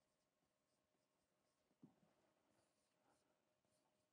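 Near silence, with faint taps and scratches of a stylus writing on an interactive touchscreen whiteboard, the clearest one about two seconds in.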